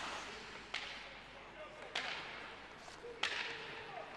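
Ice hockey play in a quiet arena: three sharp clacks of sticks striking the puck, about a second apart and the last one loudest, over a steady hiss from the rink.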